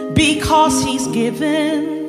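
Gospel worship song: a singer holding notes with vibrato over steady instrumental accompaniment.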